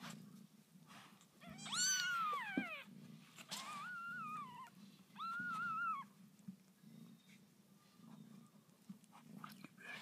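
Newborn kittens mewing: three high, thin mews in the first six seconds, each rising and then falling in pitch, over a faint low steady hum.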